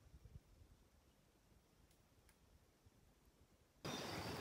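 Near silence: the sound track drops out almost completely, with faint outdoor background sound coming back just at the end.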